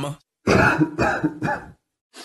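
A person coughing three times in quick succession.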